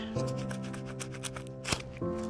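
Background music with held chords, over the rustling and light clicks of cloth work gloves being pulled onto the hands. A sharper click comes near the end.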